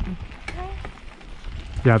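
Bicycle rolling on a hard-packed dirt and gravel trail: a low rumble of tyres on the ground, with a few small clicks and rattles from an untuned bike that its rider says makes a lot of weird sounds. A man says "yeah" at the very end.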